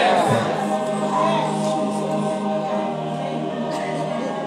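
Voices singing together without instruments, a choir-like chorus on long held notes.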